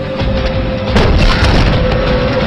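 Deep, heavy booming with a sharp hit about a second in, over a held music tone.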